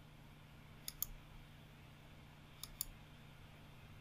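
Computer mouse clicking, two quick pairs of clicks about a second in and again near three seconds, over a faint low hum.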